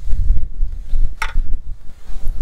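Wind buffeting the microphone: a gusty low rumble that rises and falls, with a short faint hiss just after a second in.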